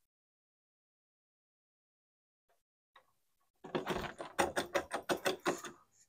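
Near silence, then, a little over halfway in, a quick irregular run of metallic clicks and rattles: a key working in a door lock and the door handle being jiggled.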